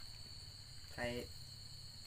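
Steady high-pitched trilling of night insects, unbroken, over a low steady hum, with one short spoken word about a second in.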